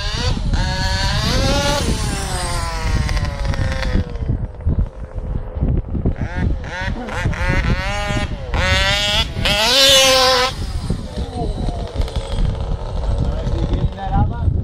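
Engine of an HPI Baja 1/5-scale RC buggy, a 50cc BZM two-stroke, revving up and down as the car drives. Its pitch climbs and falls back once over the first few seconds, then rises and falls in several quicker revs, loudest about ten seconds in.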